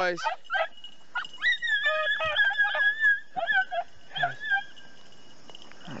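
Rabbit-hunting dogs giving tongue on a cottontail's trail: a run of high-pitched, squealing yips, thickest from about a second and a half to four and a half seconds in.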